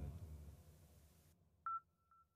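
A short electronic beep about 1.7 s in, followed by a faint steady high tone at the same pitch. Before it, the end of a spoken word fades out into near silence.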